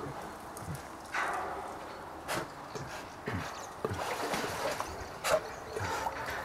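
Brown bear shifting and standing up in a water-filled metal tub: water sloshing and splashing, with a few irregular knocks about a second apart.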